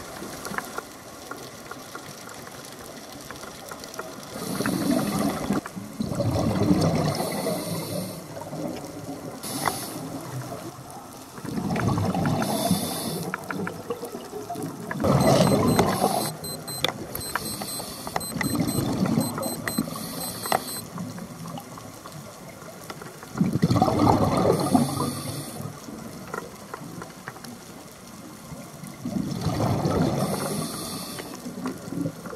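Scuba regulator breathing underwater: exhaled air bubbling out in a loud gurgling rush every few seconds, with a steady hiss between breaths.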